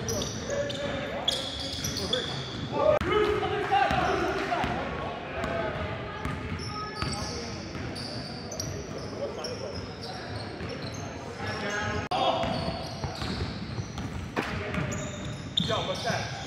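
Basketball being dribbled on a gym floor, with sneakers squeaking and players calling out, echoing in a large hall.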